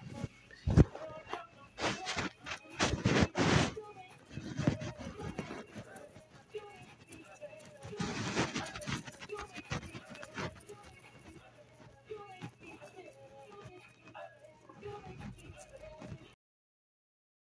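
Indistinct, muffled voice with scattered noise bursts over a faint low hum; the recording cuts off at the end.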